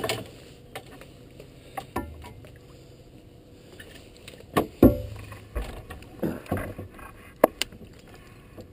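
A hooked blue catfish thrashing at the surface alongside a boat as it is brought in: irregular splashes and sharp knocks, the loudest about five seconds in.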